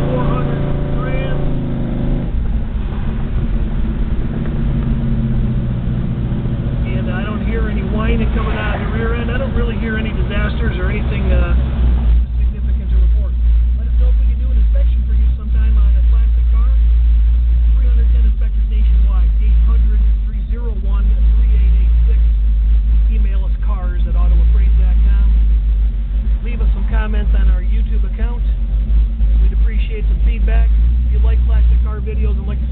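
1970 Chevelle's built 454 big-block V8, heard from inside the cabin while driving in traffic. From about halfway through, a deep low rumble takes over as the car slows and sits behind traffic at a red light.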